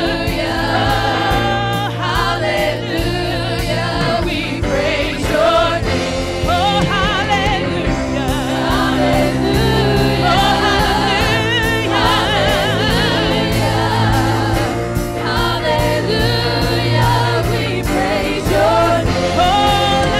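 Live gospel music: several singers on microphones singing with vibrato over a steady bass and drum accompaniment.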